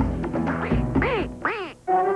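Game-show music with a drum beat, then two comic sound effects a second or so in, each a quick rise and fall in pitch. The music cuts off abruptly just before the end.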